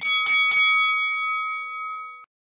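Notification-bell sound effect: a bright bell struck three times in quick succession, then ringing on as a steady chord that fades slightly and cuts off abruptly.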